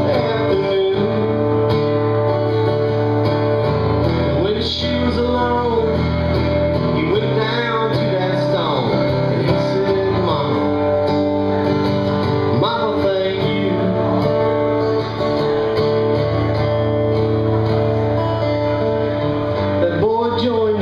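Acoustic guitar strummed in steady chords, with a man singing along in places, played live through a small-club PA.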